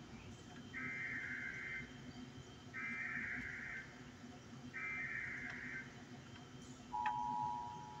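Emergency Alert System signal: three one-second bursts of warbling data tones a second apart, then, about seven seconds in, the steady two-tone attention signal starts, marking an incoming emergency warning.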